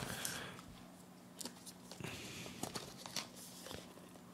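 Faint scratching and light taps of fingers handling a small cardboard box and picking at its seal, a few short clicks spread through, over a faint steady hum.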